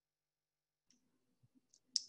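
Dead silence for about the first second, then a few faint small clicks and one sharper click at the very end.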